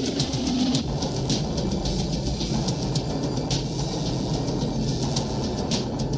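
Movie soundtrack: music mixed with a dense, steady rumble of sound effects and scattered sharp hits.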